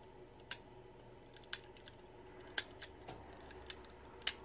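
Faint clicks of the plastic parts of an Elita-1 Transformers action figure being folded and snapped into place by hand, about five separate clicks spread a second or so apart.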